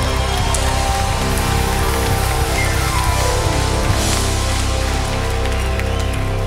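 Church worship band holding sustained chords over a steady bass, with the congregation applauding.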